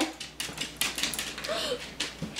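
A dog's claws clicking and tapping rapidly and irregularly on a hardwood floor as a corgi moves about excitedly.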